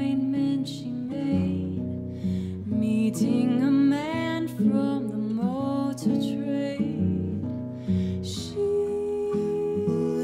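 A woman singing a slow, gentle melody, accompanied by a nylon-string classical guitar.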